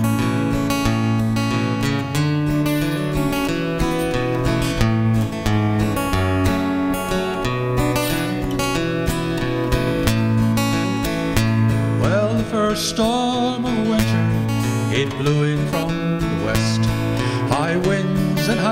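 Steel-string acoustic guitar strummed in a steady rhythm, moving through a chord progression: an instrumental break between verses of a folk ballad.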